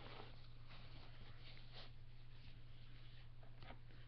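Faint rustling and a few light clicks of hands handling plastic dolls and fabric, over a steady low hum.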